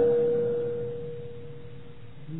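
A single steady ringing tone that fades away over about two seconds.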